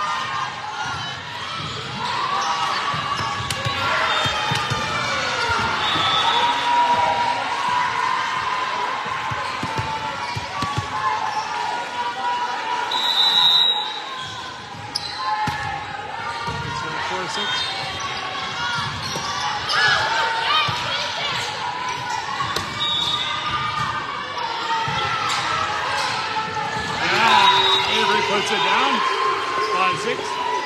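Indoor volleyball game: players and spectators calling and shouting over thumps of the ball, echoing in a large gymnasium, with a louder burst of shouting near the end.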